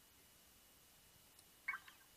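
Near silence: room tone, broken near the end by one brief sound lasting a fraction of a second.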